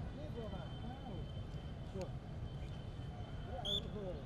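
Open-air ground ambience: faint distant voices and chatter over a low rumble, with a faint steady high tone and one short, high chirp near the end.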